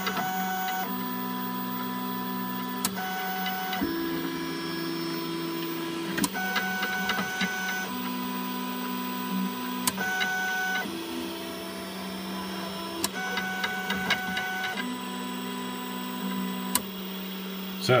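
Stepper motors of a home-built Prusa i3 3D printer whining through a series of short moves during G29 auto bed leveling, the pitch changing with each move, over a steady hum. A sharp click comes every three to four seconds as the solenoid-driven leveling probe switch is triggered at each point.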